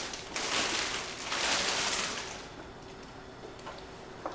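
Clear plastic bag crinkling and rustling as a vacuum sealer is slid out of it, in swells for about two and a half seconds, then only faint handling sounds.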